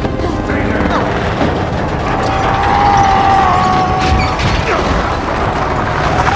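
Action-film soundtrack mix: dramatic score with a note held for about two seconds in the middle, over heavy rumble, booms and crashes.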